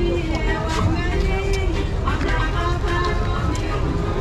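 Busy street-market ambience: nearby voices talking over a steady low rumble of traffic, with a few short knocks.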